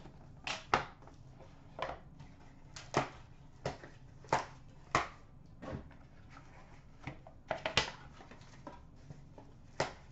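Cardboard trading-card box and cards being handled: about a dozen short, sharp taps and clicks at uneven intervals, with a quick double tap near three seconds in and another a little before eight seconds.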